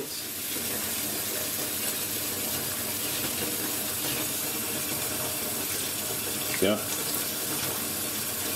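Tap water running steadily into a bathtub as it fills.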